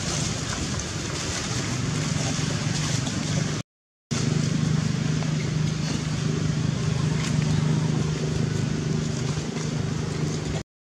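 Steady low engine hum over a wash of outdoor noise. The sound cuts out completely for about half a second a little before the middle.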